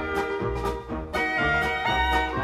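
Upbeat jazz-style band music with horns over a bass line and a steady beat of about two strokes a second.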